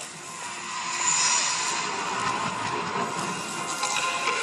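Soundtrack of an outdoor light show: a dense wash of noise that swells about a second in, over faint sustained music tones.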